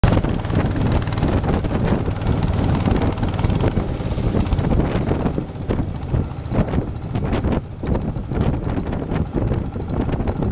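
Wind rushing over the microphone on a moving boat, over the steady running of the boat's engine. About halfway through, the rush eases and turns gustier.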